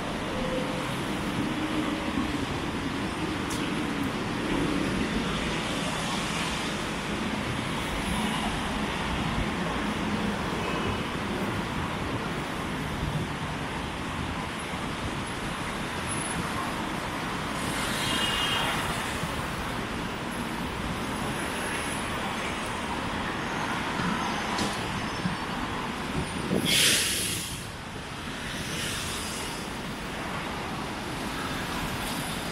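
Steady city road traffic noise, with a short, loud hiss near the end.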